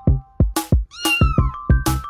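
A cat meow about a second in, falling in pitch, over an electronic music track with a fast, heavy drum beat.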